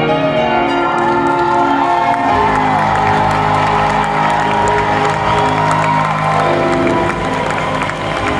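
Closing piano chords on a Baldwin grand piano, held and changing a couple of times, while the crowd cheers and whoops over them.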